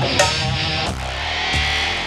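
Dramatic background film score with sustained low bass notes and sharp accent hits, one just after the start and another about a second in.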